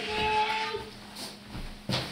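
A child's high voice holding a call for under a second, then quieter room sound and a sharp knock near the end.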